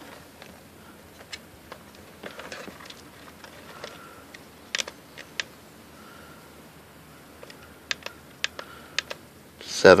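Plastic push-buttons on a Sevylor 12V electric air pump's digital pressure panel clicking, about a dozen short, irregular presses as the pressure setting is stepped up to 7 psi; the pump motor is not running.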